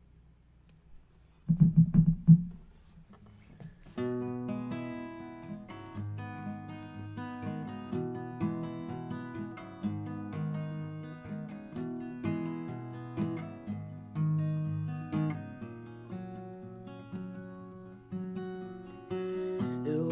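Steel-string acoustic guitar picked slowly as a song's intro, starting about four seconds in, with separate notes ringing over each other. Before it, about a second and a half in, comes a brief burst of loud, low close-microphone noise.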